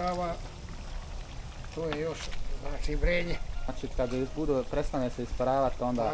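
People talking, with a laugh about halfway through, over the bubbling of pork fat and rinds simmering in a large kettle as they render down into cracklings.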